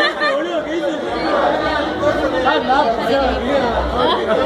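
Several people talking over one another in unintelligible party chatter.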